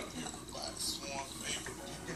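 Water bubbling in a glass bong as a dab is inhaled through it, with soft voices underneath.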